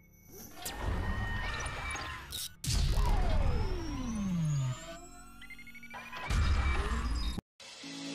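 Intro sound design over electronic music: whooshes and impact hits, with a loud hit about three seconds in followed by a long falling synth sweep, another hit a little past six seconds, then a brief cut to silence before a song begins at the very end.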